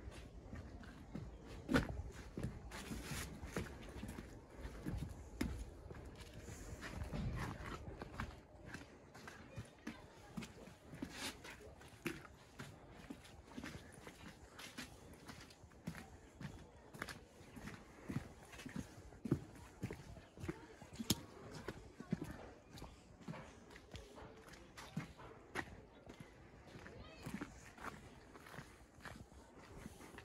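Footsteps walking at a steady pace along an unpaved alley of packed earth and stone, with voices in the background.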